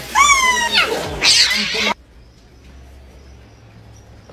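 A kitten mewing loudly: one long, high mew that slides down in pitch, then a harsher, noisier cry. It cuts off suddenly about two seconds in, leaving only faint background sound.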